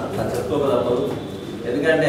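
A man speaking to an audience in a room, his voice carrying a little echo.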